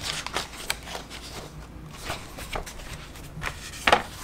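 Comic books being handled on a wooden table: light paper rustles and page flicks, with a sharper knock near the end as a comic is set down.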